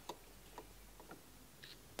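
Near silence with a few faint, scattered ticks from a fabric sample being handled and pulled open flat along a flatlock seam.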